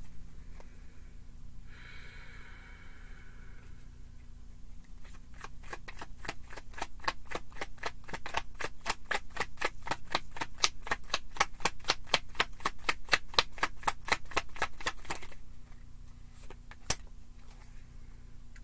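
A tarot deck being shuffled by hand: a short rustle about two seconds in, then about ten seconds of even, rapid clicks of card against card, about five a second. Near the end comes a single sharp snap as a card is laid down on the table.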